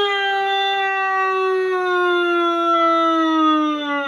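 A house cat's long, drawn-out yowl, one unbroken call whose pitch slowly falls.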